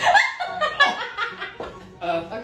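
High-pitched laughter in short broken bursts, loudest in the first second and trailing off, from a person being grabbed at the sides in a tickle prank.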